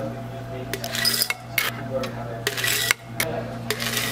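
Nugget ice scooped with a plastic scoop from a countertop ice maker's bin and tipped into a glass mason jar: a series of short rattling, scraping clatters of ice against plastic and glass, over a steady low hum.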